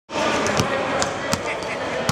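A basketball being dribbled on a hardwood court: a few sharp bounces over the steady chatter of an arena crowd.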